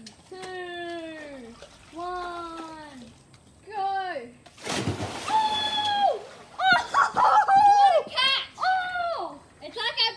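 A person splashing into a swimming pool about five seconds in, a short loud burst of water, set between children's long, falling countdown calls before it and excited high-pitched shouting after it.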